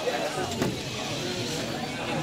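Spectators talking over the whine of small competition robots' electric drive motors, with two sharp knocks near the start and about half a second in.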